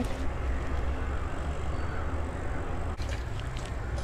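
Steady low background rumble with a soft, even hiss, with a single brief click about three seconds in.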